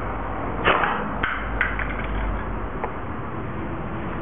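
A home-made paper toy gun firing: one sharp snap about two-thirds of a second in, followed by several lighter clicks and taps.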